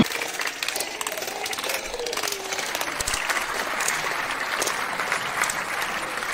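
Audience applause, steady, with voices talking over it.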